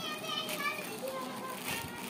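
Children's high-pitched voices calling in the background, with a single click near the end as the plastic courier packet is cut open with scissors.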